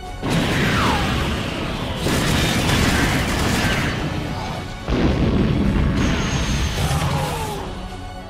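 Sci-fi beam-weapon and explosion sound effects: three loud sudden blasts, at the start, about two seconds in and about five seconds in, each fading slowly, with falling whistle-like tones, over background music.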